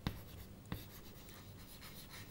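Chalk writing on a chalkboard: faint scratching with a couple of light taps, one at the start and one under a second in.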